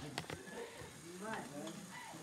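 Faint voices talking in the background, with a few light clicks just after the start.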